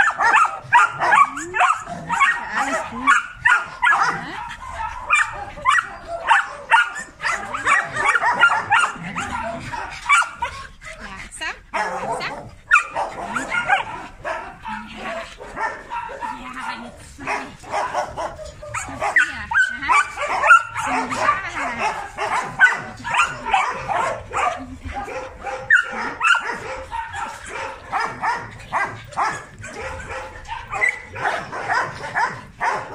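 Several dogs barking and yapping, many short barks close together, with a brief lull about ten seconds in.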